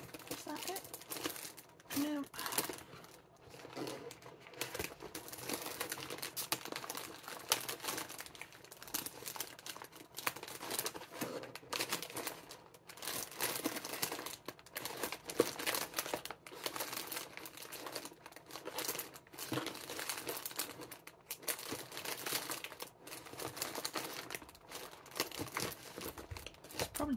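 Continuous crinkling and rustling of packaging and paper as snack packets are handled in a box and a booklet's pages are turned, in many small irregular crackles.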